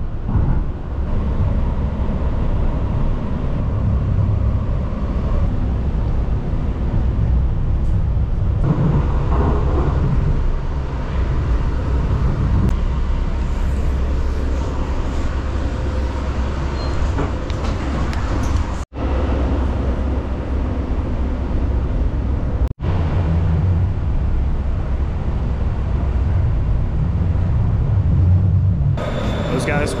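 Steady low rumble of a light rail train car running on the track, heard from inside the car. The rumble drops out abruptly for an instant twice, and near the end it gives way to a brighter hiss.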